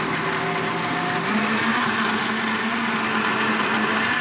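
Countertop jug blender running, its motor blending banana, berries and water into a smoothie. The motor hum steps up a little in pitch just over a second in.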